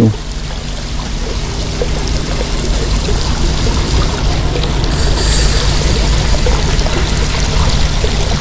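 Water pouring and trickling into a fish-rearing tank, a steady wash that grows a little louder after the first few seconds, with a steady low hum beneath.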